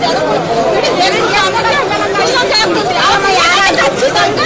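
A crowd of men and women talking over one another, several voices at once with no single speaker standing out.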